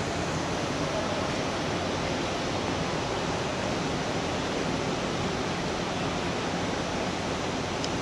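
Steady, even rushing noise of a large terminal hall's ambience, with no distinct events standing out.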